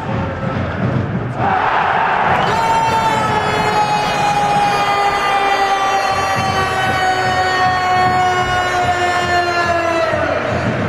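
Arena crowd noise that rises sharply into cheering about a second and a half in, then an ice hockey goal horn sounding one long blast of about seven and a half seconds, its pitch sinking slowly, over the cheering: the signal of a goal.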